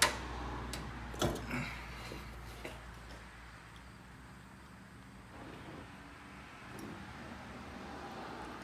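Dodge Neon SRT-4's hood being lowered and shut: a sharp knock right at the start and a heavier thud about a second in, then a few faint ticks over a low steady hum.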